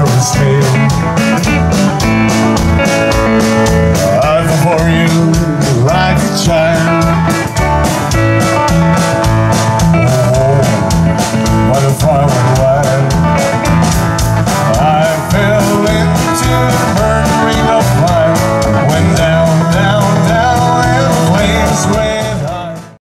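Live country band playing: drum kit keeping a steady beat under electric guitar, bass guitar and strummed acoustic guitar, loud throughout.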